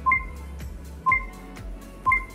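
Countdown timer beeps: a short electronic beep once a second, twice here, counting down the last seconds of a timed exercise interval, over background music.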